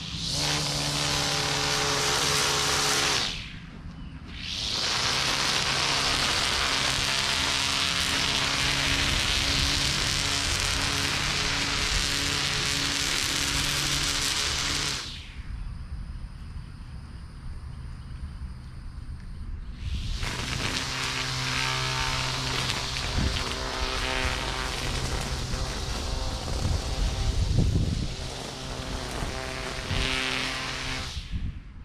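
Distant battery-powered Husqvarna string trimmer cutting grass with a steady high whine. It is let off briefly about three seconds in, cut again, let off for about five seconds in the middle, then run again to the end.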